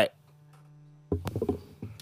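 A faint, steady electrical hum in the microphone feed for about the first second. Then a sharp click and low, indistinct voices.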